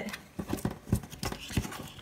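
Hands handling a card of washi tape and pressing strips of it onto paper planner pages: a handful of short taps and soft rustles of tape, card and paper on the tabletop.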